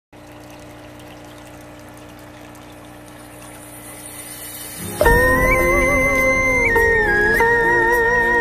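Water trickling and pouring steadily in a fish tank for about five seconds. Then music comes in suddenly and much louder: a slow melody of long, wavering held notes.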